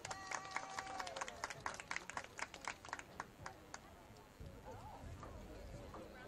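A rapid run of sharp clicks or taps, about six a second, lasting about three seconds, with a short held tone near the start. Faint distant voices over a low rumble follow.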